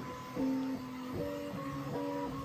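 Bambu Lab X1 Carbon 3D printer's stepper motors singing as the print head moves fast: a string of steady, musical tones that jump to a new pitch every half second or so as each move changes direction and speed. The printer has no silent stepper drivers, so the motor tones are plainly heard.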